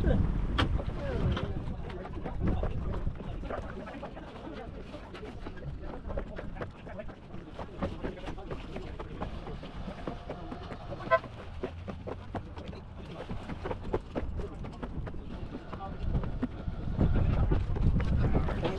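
Wind rumbling on the microphone aboard a small sailboat, with scattered light clicks and knocks. A short laugh at the start, and indistinct voices.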